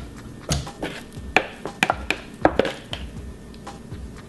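Pestle pounding hot, sticky glutinous rice cake dough in a mortar, heard as about half a dozen irregular dull knocks. The dough has already turned elastic.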